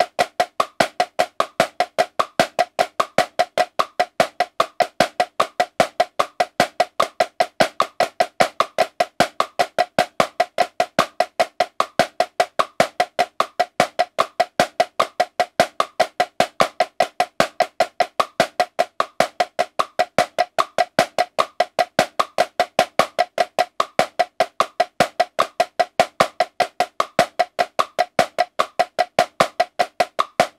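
Marching snare drum played in an unbroken run of sixteenth notes, about five strokes a second at 75 beats per minute: the choo-choo (flam tap) moving-rudiment grid, each stroke a sharp crack with a short ring.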